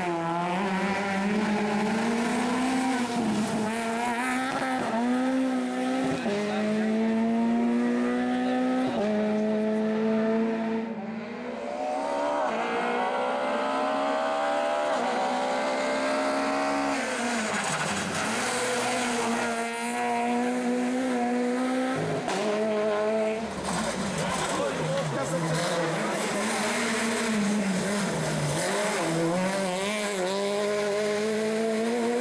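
Rally car engine running hard on a stage, its note climbing and then dropping again and again through the gear changes, with a brief lift off the throttle about eleven seconds in.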